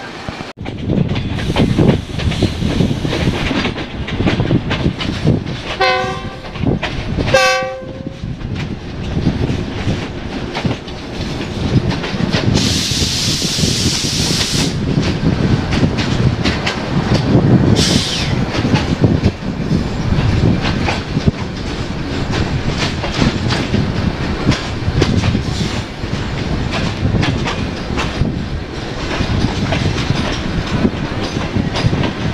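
A diesel-electric passenger train passing close by, hauled by a GEU-20 locomotive, with a constant rumble. Its horn gives two short blasts about six and seven and a half seconds in. A loud hiss lasts about two seconds near the middle, then the coaches roll past with a steady clickety-clack of wheels over rail joints.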